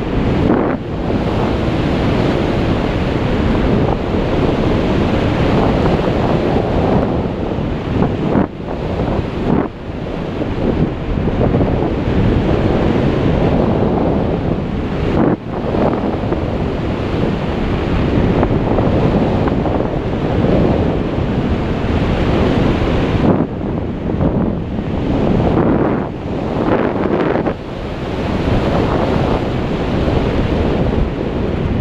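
Loud wind buffeting the camera microphone during a parachute descent under an open canopy. It is a steady rush that dips briefly a few times, around a third of the way in, near the middle and again toward the end.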